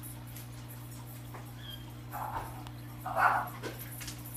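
Steady low hum of an aquarium's air pump or filter, with two short breathy sounds about two and about three seconds in, the second the louder.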